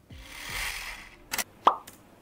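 Editing sound effects: a soft whoosh swells and fades over the first second, then a click and a short cartoon-like pop near the end, the kind added as an on-screen graphic pops up.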